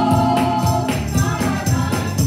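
Gospel group singing with instrumental accompaniment and hand-clapping on the beat, about two claps a second.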